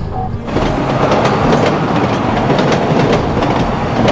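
Train running on rails, a loud rushing noise with sharp clicks every fraction of a second. It cuts in suddenly about half a second in.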